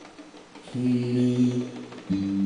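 Background ballad music at a lull: nearly quiet at first, then a single long held note from a little under a second in until just before the end. The bongos are not being struck.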